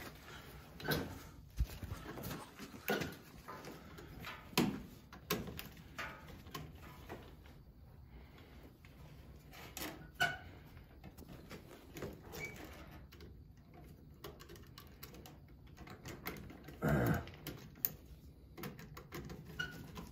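Irregular small clicks, taps and rustles of hands and a screwdriver working thermostat wire into the terminal block of a boiler zone switching relay, with a few louder knocks.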